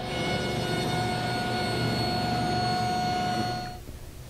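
Table saw running with a steady whine as a board is ripped to width; the sound drops away shortly before the end.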